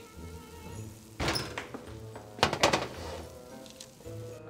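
Metal sheet pan set down on a stone countertop: a knock about a second in, then a quick clatter of knocks about two and a half seconds in, over soft background music.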